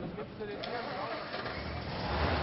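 Car engine running: a low rumble that comes up about one and a half seconds in, over a steady hiss.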